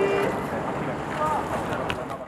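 Steady hiss of rain and wind, with people's voices calling out briefly at the very start and again a little over a second in.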